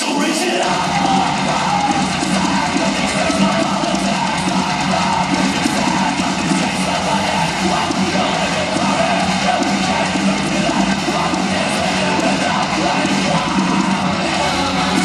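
Loud, steady rock music with electric guitar; the bass comes in about half a second in.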